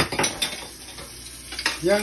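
Dishes and metal pots clinking in a stainless steel sink, with a few sharp knocks in the first half second and another about a second and a half in, over running tap water.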